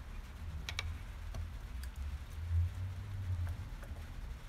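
Light metallic ticks and clicks from a small screwdriver turning the height screws of a Stratocaster's steel bridge saddles while the string action is set. A quick cluster of clicks comes about three-quarters of a second in, then single ticks spread out.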